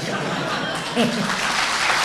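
Audience applauding in a hall, the clapping swelling and growing denser, with a short laugh about a second in.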